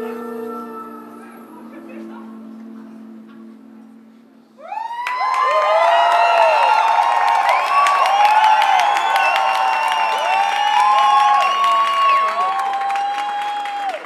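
The song's last held chord fades out, and about four and a half seconds in the audience bursts into cheering, whooping and applause, which carry on loudly to the end.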